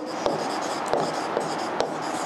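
Scratching of writing on a surface, with a few light taps spread through it.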